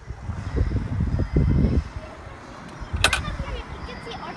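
Wind buffeting an outdoor phone microphone in irregular low gusts for the first couple of seconds, then settling to a quieter outdoor background with a single sharp click about three seconds in.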